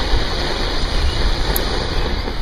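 Steady rushing breath of a person blowing into a smoking tinder bundle of dry leaves, twigs and pine needles, fanning the ember toward flame.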